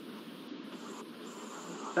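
Steady low hiss of background noise, even and without any tone or rhythm, in a pause between spoken words.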